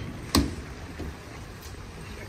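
Outdoor parking-lot background noise, a steady low hum, with a single sharp knock about a third of a second in.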